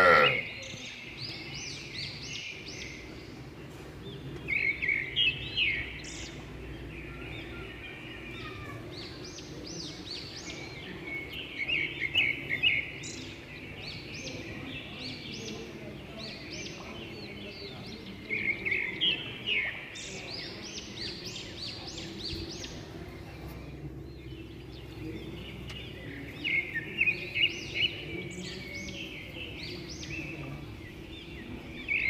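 Small birds chirping in quick high bursts, four clusters a few seconds apart, over a steady low background hum.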